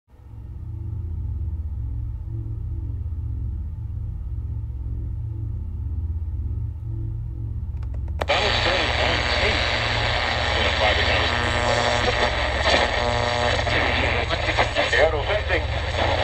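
A deep, pulsing bass line plays alone for about eight seconds. Then radio static cuts in suddenly, with garbled fragments of broadcast voices as a portable AM/FM weather-band radio is tuned between stations, over the continuing bass.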